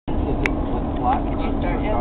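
Steady low rumble of a moving car heard from inside the cabin, with a single sharp click about half a second in.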